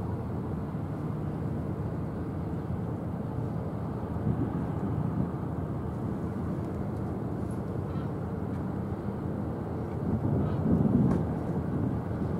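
Steady low rumble of outdoor background noise, swelling briefly about four seconds in and louder again near the end.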